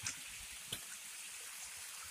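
Small waterfall trickling down a rocky streambed, a faint steady rush of water, with one light tick about three-quarters of a second in.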